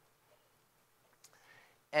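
Near silence: room tone in a pause between sentences, with one faint click a little past halfway. A man's voice starts again right at the end.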